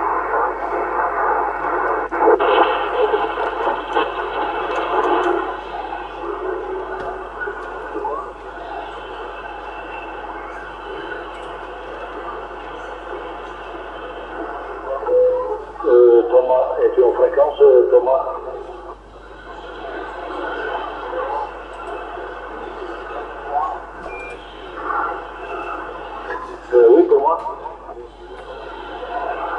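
Received CB radio audio from a Yaesu FT-450 transceiver on the 27 MHz band: faint, hard-to-follow voices of distant stations under steady static hiss. The voices fade in and out, with stronger bursts about two-thirds of the way through and again near the end.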